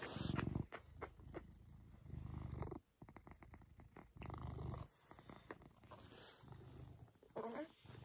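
Maine Coon cat purring close to the microphone, its purr swelling louder about every two seconds with each breath.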